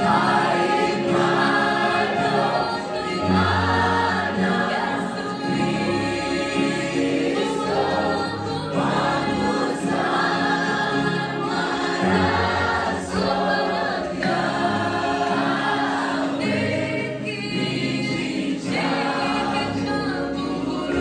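A worship team singing a gospel song together into microphones, live with a keyboard, in phrased lines over sustained chords and low bass notes.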